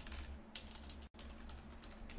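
Computer keyboard keys clicking as a password is typed, over a low steady hum.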